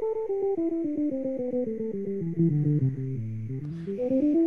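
Electric guitar played fingerstyle: a fast line of single notes running steadily downward through about two octaves, then turning and climbing back up near the end.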